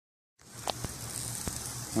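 Burgers and hot dogs sizzling on a gas grill: a steady hiss with a few faint pops, starting about half a second in.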